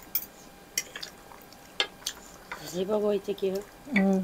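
Metal forks clinking and scraping against a ceramic plate as noodles are stirred and lifted, with a few separate sharp clinks. A voice is heard briefly near the end.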